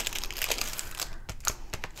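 Clear plastic cover film on a diamond painting canvas crinkling and crackling in small irregular bursts as fingers handle its corner and press on it, with a few sharp clicks.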